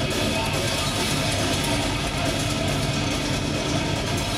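Heavy metal band playing live at full volume, heard from the crowd: distorted electric guitars over bass and drums in a dense, steady wall of sound.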